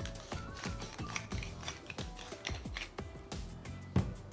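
Hand pepper mill grinding pepper, a quick run of dry ratcheting clicks, over background music.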